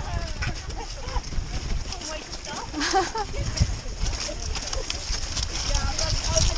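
Horses moving along a muddy track, their hooves thudding unevenly, with faint voices of nearby riders.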